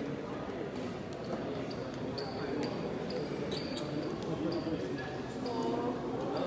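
Many people talking at once in a large hall, a continuous crowd murmur, with intermittent dull thuds and a few short clicks.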